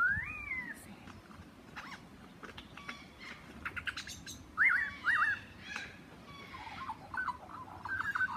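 Superb lyrebird calling in mimicry: a rising whistle, then a run of sharp clicks, a pair of quick arched whistled notes about halfway, and more short whistles and clicks near the end.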